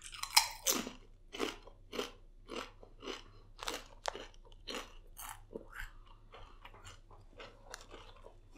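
A person chewing crisp chestnut-flavoured Lay's potato chips, with steady crunches about two a second.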